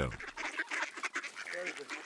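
A crowded flock of mallards being fed, with scattered quacks over many short clicks and scuffles from the birds jostling and pecking.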